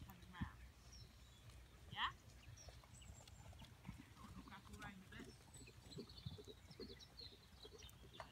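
Faint, muffled hoofbeats of a ridden horse moving over a soft arena surface, with a short vocal call about two seconds in.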